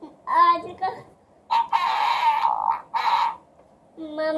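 A recorded fart sound effect from a 'Fart' party-game toy figure, a buzzy blast lasting about two seconds with a short second burst just after it, set off by squeezing the game's air bulb. A brief voice is heard just before it.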